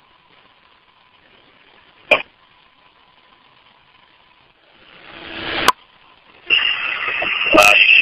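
Fire department two-way radio channel between calls: faint hiss, a short click about two seconds in, and a rising rush of static that cuts off suddenly a little past halfway. A radio voice transmission starts near the end.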